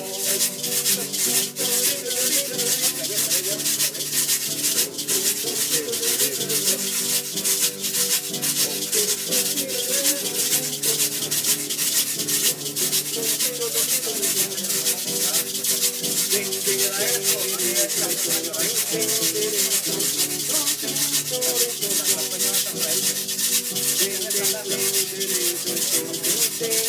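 Instrumental break in Puerto Rican country music: an acoustic guitar plays a melody over a steady, dense scraping rhythm from a güiro.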